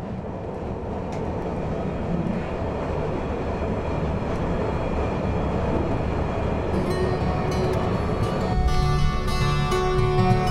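Train noise: a steady rail rumble that grows gradually louder. About eight and a half seconds in, guitar music comes in over it.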